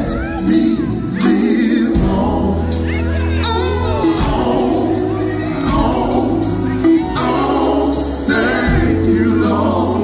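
Live gospel band playing, with electric bass, electric guitars, drums and keyboard, under singing. The bass holds long low notes, the drums hit at a regular beat, and the vocal lines glide up and down.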